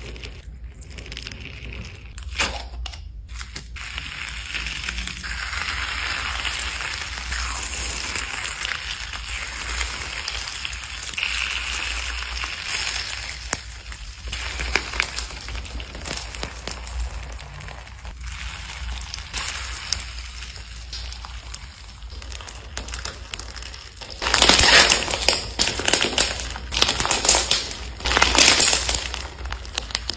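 Hands squeezing, poking and kneading slime, making a steady run of small sticky clicks and pops, some of the slime packed with beads. Much louder stretches of the same clicking come in the last several seconds.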